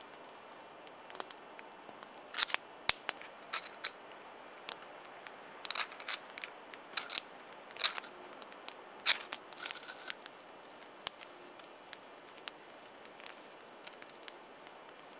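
A hand-held fire striker struck again and again to throw sparks into a wad of dryer lint: a dozen or so sharp, irregular clicks and short scrapes from about two seconds in to about ten seconds in, until the lint catches.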